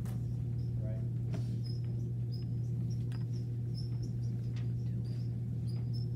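Dry-erase marker squeaking on a whiteboard as it is written with: many short, high squeaks in quick strokes, with a few light taps, over a steady low hum.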